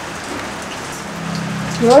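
Steady hiss of rain. A man hums a low "hmm" about a second in, then says "yo" at the very end.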